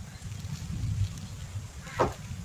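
A low, steady rumble with one short, loud animal cry near the end.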